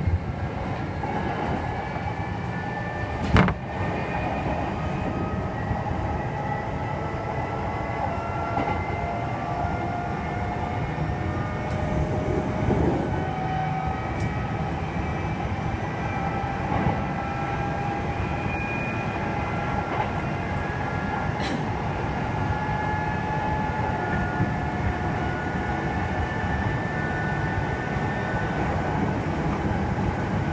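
Running sound of a Kintetsu 2800 series resistor-controlled electric train at fairly high speed, heard from inside the car: the traction motors and gears give a high-pitched whine of several tones that rise slowly in pitch over the first half and then hold steady, over the rumble of the wheels on the rails. A single sharp knock comes about three seconds in.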